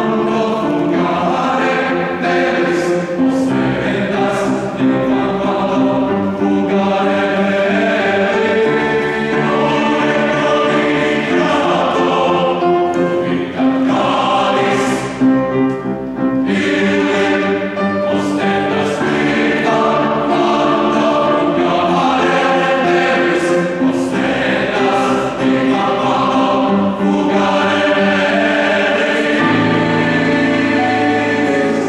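Mixed choir singing in several parts, holding sustained chords that change from phrase to phrase.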